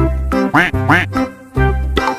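Playful background music with a steady bass beat; about halfway through, two short squeaky notes bend up and back down.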